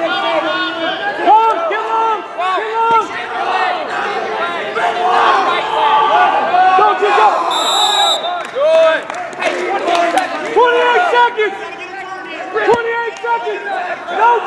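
Spectators and coaches shouting and yelling over one another throughout. About halfway through, a short, high, steady whistle blast sounds.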